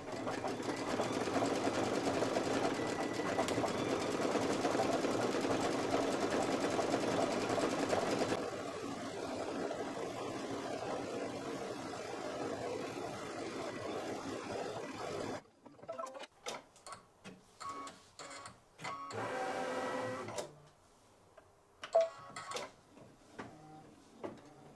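Computerized embroidery machine stitching an appliqué at speed, its needle running in a dense, steady rhythm that drops to a quieter run after about eight seconds. About fifteen seconds in the stitching stops, and short mechanical whirs and clicks follow.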